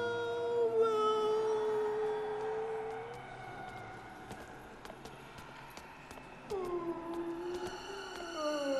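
A character's voice holding one long, slightly wavering note that fades away after about three seconds. Near the end a second note slides down and then holds.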